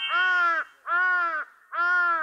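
A crow cawing three times, each caw about half a second long and rising then falling in pitch, used as a comic sound effect over an awkward silence.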